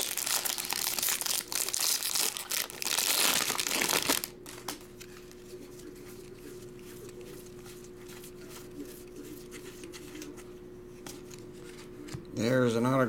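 Foil wrapper of a baseball card pack crinkling and tearing open, loud for about the first four seconds. Then quieter soft flicks as the cards are thumbed through a stack.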